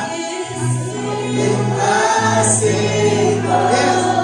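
A congregation singing a slow worship song with a live keyboard and electric guitar. Long sustained low notes run underneath and change once about halfway through.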